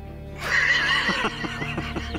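A horse whinnies, a wavering high call that starts about half a second in and falls away after about a second, over background music.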